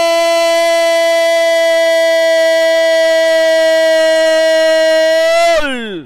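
Football commentator's long drawn-out goal cry, a single "Gooool" held on one steady high pitch, gliding down and breaking off near the end.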